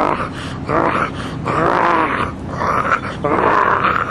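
A man crying loudly, in about five drawn-out, wailing sobs with short breaks between them.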